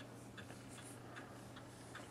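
Near-silent room tone: a faint steady low hum with a few faint ticks.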